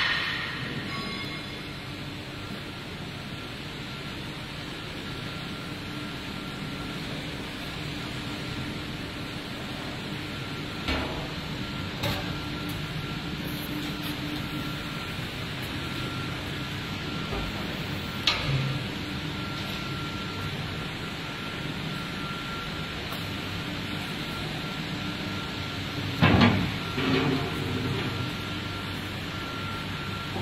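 Rubber conveyor belt production machinery running steadily: a continuous mechanical hum with a faint broken high tone as the belt feeds over rollers. A few short knocks come partway through, and a louder clatter near the end.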